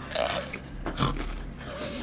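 A person chewing a mouthful of food close to the microphone, with wet crunching and a short grunt-like sound from a full mouth.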